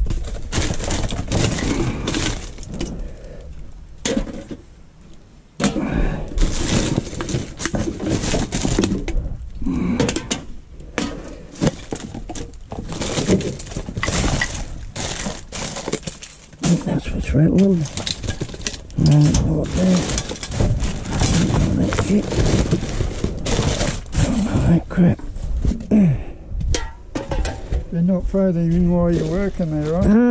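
Plastic bags, wrappers and food containers crinkling and clattering as gloved hands rummage through household rubbish in a dumpster, in quick irregular bursts.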